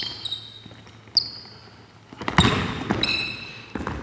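Basketball being dribbled on a hardwood gym floor, with sneakers squeaking sharply several times as the players move. It gets busier and louder from about halfway through.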